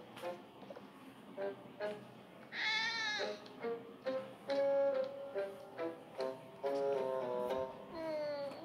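Cartoon background music of short, spaced notes, with a cat meowing once about two and a half seconds in and a falling meow-like cry at the very end.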